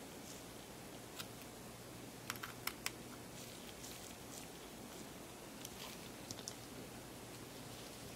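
Faint, sparse clicks of a precision screwdriver tightening tiny screws in a camera's power and mode-dial switch assembly, a few quick ticks in two clusters, over a low steady room hum.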